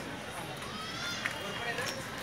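Faint voices talking in the background over steady outdoor noise.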